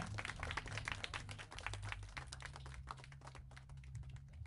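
A small audience clapping right after a band's song ends, the claps thinning out towards the end, over a low steady hum.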